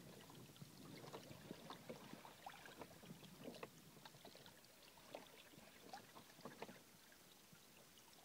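Faint water lapping and splashing against the hull of a Hobie Tandem Island sailing kayak under way, with many small, irregular splashes.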